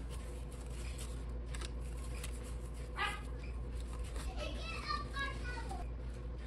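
A child's voice faintly in the background, a short call about three seconds in and a longer, falling one near the end, over a low steady hum. Paper banknotes rustle and tick lightly as they are handled.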